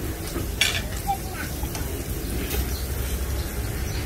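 Meat and prawns sizzling on a tabletop dome grill pan, with a sharp clink of metal tongs about half a second in and a steady low rumble underneath.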